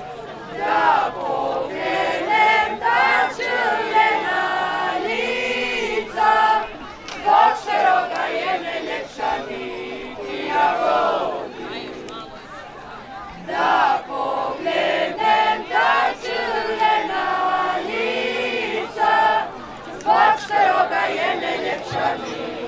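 A mixed group of men's and women's voices singing a Međumurje folk song together, loud phrases with long held notes.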